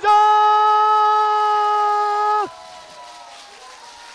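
A football commentator's drawn-out shout of "goal!", held loud at one steady pitch for about two and a half seconds before breaking off.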